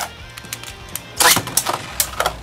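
Beyblade Burst tops spinning and clattering in a plastic stadium, with a sharp click at the start and a louder clack a little over a second in as the second top comes into play.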